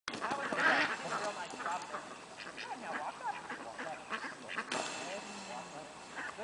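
A flock of domestic ducks quacking, many short overlapping calls, as a herding dog drives them.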